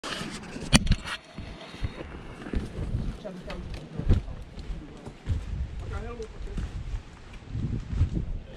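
Footsteps on a dirt and loose-slate trail, with low thumps every second or so, under a low rumble of wind and handling on a body-worn camera. Sharp knocks in the first second come from a finger touching the camera. A short wavering voice-like sound comes a little before six seconds.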